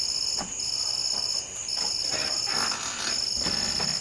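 A chorus of night insects singing: a steady high-pitched hum with a second shrill trill over it that sounds for about a second at a time, with short breaks in between.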